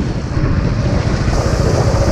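Royal Enfield Bullet 500's single-cylinder engine running steadily under the rider while the motorcycle is under way, with a fast, even beat of firing pulses.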